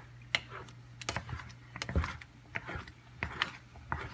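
Wooden spatula scraping and knocking against the bottom of a pan while stirring thick chili sauce, lifting the browned bits stuck to the bottom, in irregular scrapes and clicks. A steady low hum runs underneath.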